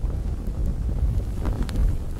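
Low rumbling roar of flames with a few sharp crackles, the fire sound effect of a burning logo animation.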